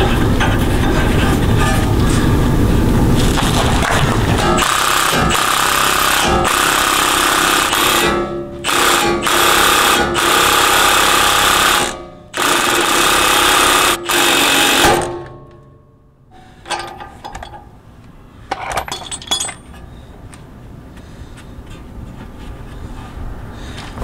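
Cordless impact wrench hammering in long bursts, driving the screw of a ball joint separator to force a stuck tie-rod end out of the steering knuckle. It breaks off briefly twice and stops about 15 seconds in, after which only quieter metal clicks and handling remain.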